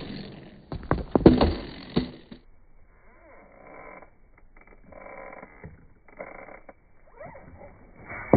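Skateboard clattering on concrete during a flip-trick attempt: a few sharp smacks of the deck and wheels hitting the ground in the first two seconds. After that, fainter on-and-off rumbling of the wheels rolling and scuffing on the concrete.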